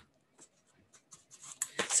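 A deck of oracle cards being shuffled by hand: a run of soft papery flicks and slides that grows busier near the end.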